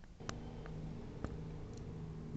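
Faint handling noise: a few light clicks over a low steady hum.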